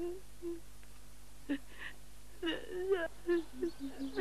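Short wordless bursts of a human voice, growing more frequent after about two and a half seconds, over a steady low hum in the old film soundtrack.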